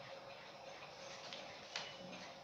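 Faint room hiss with a few soft clicks, the sharpest near the end, from a sheet of paper being handled and moved.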